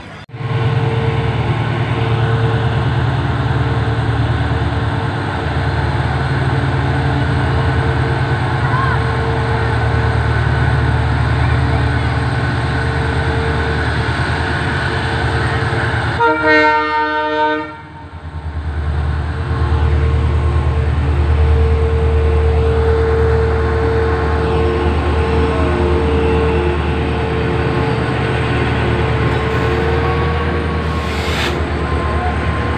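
Freight train rolling along the track with a steady heavy rumble of wheels and wagons. About sixteen seconds in, a locomotive horn sounds once for about a second and a half, and then the rumble comes back heavier.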